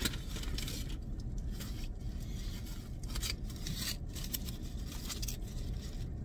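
Foil-and-paper sandwich wrapper crinkling in irregular short crackles as it is handled, over a steady low hum.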